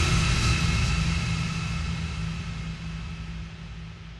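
Aircraft engine drone used as a sample: a steady hum with hiss, fading gradually.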